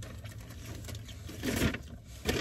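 Low steady hum of a car's engine idling, heard inside the cabin, with one brief sound about a second and a half in.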